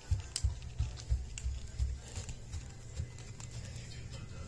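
Irregular soft thumps and small clicks, handling noise of a phone rubbing and bumping against carpet and fabric, over a steady low hum and faint background music.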